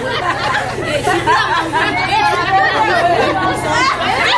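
Several women's voices chattering at once, talking over one another.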